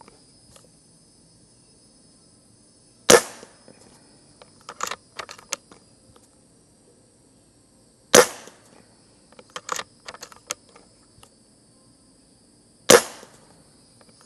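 Umarex Komplete NCR .22 nitrogen-cartridge PCP air rifle firing three shots about five seconds apart, each a sudden sharp report. Between shots there are short runs of mechanical clicks as the side-lever cocking handle is worked to index the rotary magazine.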